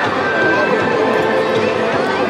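Many children's voices chattering and calling out at once, a steady, loud babble.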